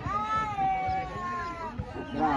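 A single long, high-pitched shout, held for about a second and a half and sliding slowly down in pitch.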